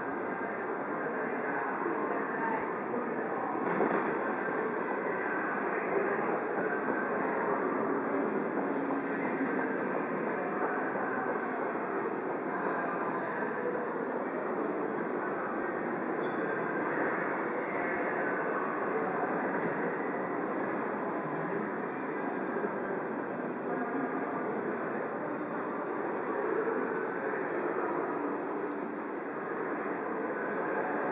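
Steady city ambience from a busy crossing: a continuous wash of traffic and crowd noise with indistinct voices mixed in, unchanging throughout.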